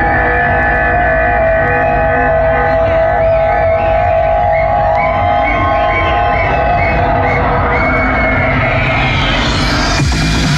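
Live electronic music played loud, with held synth tones and a short chirping figure repeating about three times a second through the middle. A rising noisy sweep builds near the end.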